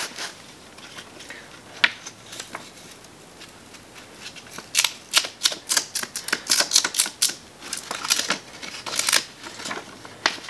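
220-grit sandpaper rubbed by hand back and forth on a wooden wheel spoke. Mostly quiet with a couple of light clicks at first, then from about halfway in a run of quick scratchy strokes, about three a second.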